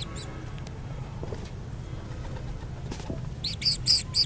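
Birds chirping: a quick run of high, repeated chirps near the end over a steady low background rumble with a few faint taps.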